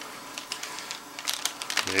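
Masking paper and tape being peeled off a freshly sprayed panel, the paper crinkling in a scatter of small crackles that grow busier near the end.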